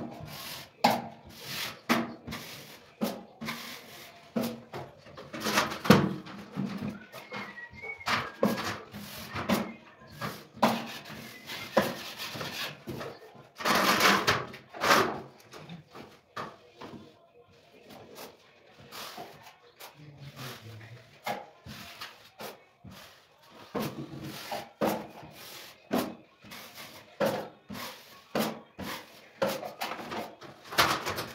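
Metal drywall knife working joint compound over plasterboard joints: irregular scraping strokes and knocks of the blade, with one longer scrape about halfway through.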